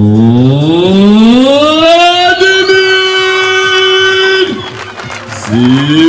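A siren wailing: its pitch rises over about two seconds, holds a steady tone, falls away about four and a half seconds in, and starts rising again near the end.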